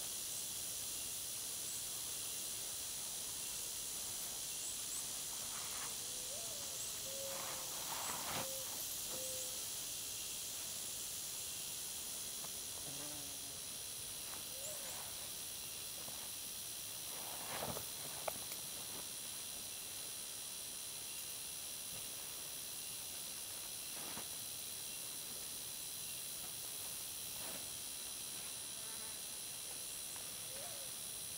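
A steady, high-pitched chorus of insects in the woods, in several even bands. It is broken by a few short rustles of clothing about a quarter of the way in and again just past halfway, with a sharp click among the second.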